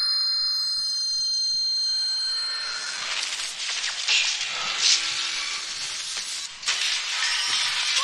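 Film soundtrack of an action scene: a high ringing tone that fades over the first couple of seconds, then loud crashing and shattering with sharp impacts.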